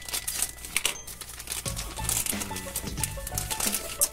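A thin plastic foil bag crinkling as it is snipped open with scissors and pulled apart, with background music playing underneath.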